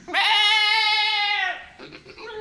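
A man mimicking an animal cry with his voice: one long, loud, wavering call lasting about a second and a half, sliding up at the start and dropping away at the end.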